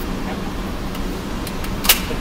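A steady low background hum with a few faint clicks, then one sharp crack near the end.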